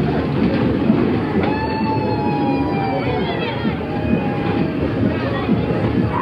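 Ghost-train ride cars rumbling and clattering along their track. A long squeal starts about a second and a half in and slides slightly lower over about two seconds.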